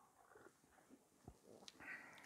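Near silence: room tone in a lecture hall, with a couple of faint clicks in the second half.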